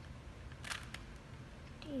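Plastic Rubik's cube being turned by hand: a quick cluster of sharp clicks and rattles of the layers about two-thirds of a second in, with a few fainter clicks after. A short spoken word near the end.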